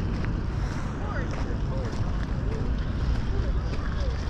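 Wind buffeting the microphone of a moving camera, a steady low rumble, with faint voices now and then in the background.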